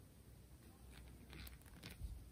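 Near silence, with a few faint, short rustles in the second half as a sewing needle and thread are drawn through a crocheted yarn toy and handled by the fingers.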